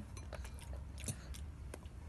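A toddler's mouth chewing and smacking while eating spaghetti and meatballs by hand: a few soft, scattered clicks over a low steady background hum.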